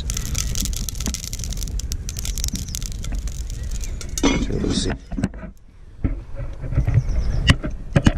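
Wood fire in a Prakti stove crackling under a smoking-hot, oil-coated cast iron cauldron, with dense clicks and a steady low rumble. A brief murmur of voice comes just after four seconds in.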